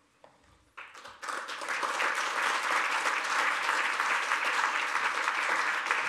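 Audience applause: many people clapping, starting about a second in and building quickly to steady applause.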